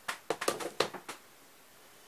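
A quick run of soft clicks and rustles in the first second or so: hands picking up and handling a small gecko.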